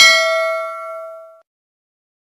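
Notification-bell 'ding' sound effect from a subscribe-button animation: one bright bell chime with several ringing tones that fades out over about a second and a half.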